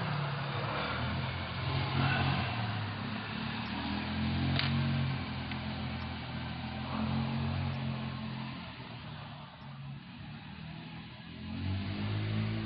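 A low, steady engine hum with hiss, like a motor vehicle running nearby; it dips for a moment late on.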